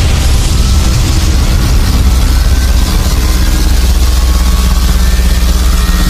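Loud outro soundtrack: a steady, low rumbling drone with a buzzing, motor-like edge.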